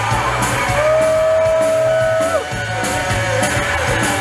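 Live rock band playing loud: electric bass, drum kit with repeated cymbal strikes, and electric guitar. About a second in, a long high note is held, then bends downward and breaks off about halfway through.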